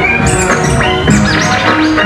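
Turntablist routine on two turntables: music playing from vinyl through the mixer, cut with record scratches that sweep up and down in pitch, about a quarter second and a second in.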